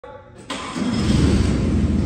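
Forklift engine starting about half a second in, then running steadily with a low rumble.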